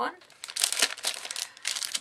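Clear plastic packaging on scrapbooking card and die-cut packs crinkling as the packs are handled, in a quick series of rustles.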